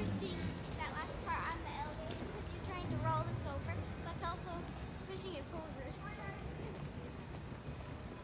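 Rolling suitcase wheels and footsteps clicking on a hard terminal floor, with faint voices in the background.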